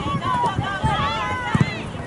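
High-pitched young voices calling and shouting across an open field, with a few dull thumps in between.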